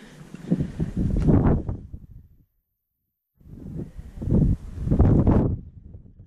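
Wind buffeting the microphone in two loud gusts, each about two seconds long, with a short dead gap between them.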